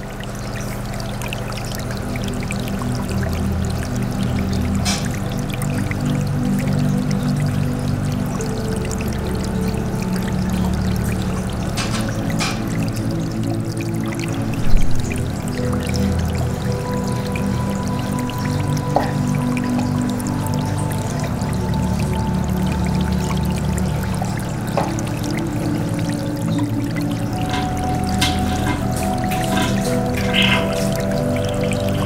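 Calm ambient background music with long held low notes, with water pouring and trickling underneath from aquarium maintenance. A single sharp knock comes about 15 seconds in.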